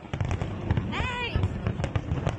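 Aerial fireworks shells bursting in a dense volley of rapid bangs and crackles with low booms, starting suddenly.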